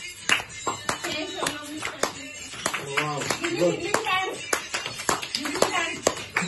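A group clapping hands in time, about two to three claps a second, for people dancing. Several voices call out over the claps, most clearly about halfway through.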